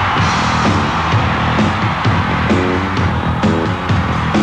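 Hard rock band playing live on stage: pounding drums, bass guitar and distorted electric guitars kicking into a song's instrumental opening.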